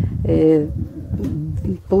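A person's voice between phrases of speech: a held hesitation sound early on, then short broken bits of voice.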